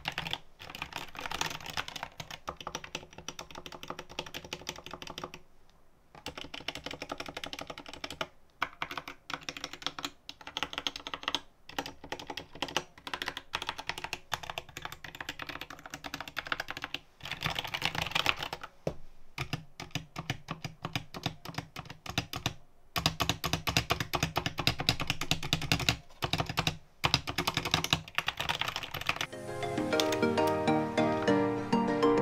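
Typing on an SK64S mechanical keyboard with Gateron optical red linear switches: a fast, uneven run of key clacks with short pauses. The keystrokes grow louder and deeper about two-thirds of the way in. Music starts just before the end.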